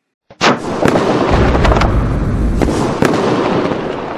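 Fireworks sound effect: a run of sharp bangs and crackling over a deep rumble, starting suddenly about half a second in.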